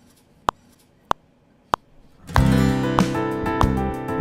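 A metronome clicks four times, evenly at 96 beats a minute, as a one-bar count-in. About two seconds in, an acoustic guitar starts strumming chords over backing tracks of bass, piano and drums.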